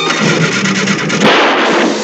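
A loud, noisy cartoon crash or blast sound effect, a dense rush with a sharper surge about halfway through.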